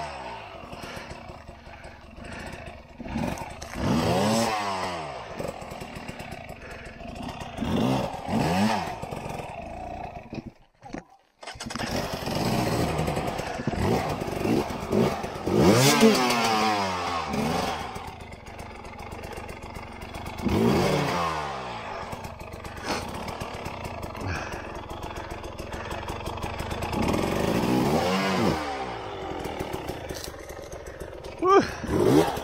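Two-stroke enduro dirt bike engines, the KTM 300 TPI among them, revving in repeated short bursts, each rev rising and falling in pitch, on a steep, slow trail climb. The sound drops almost to nothing for about a second, around eleven seconds in.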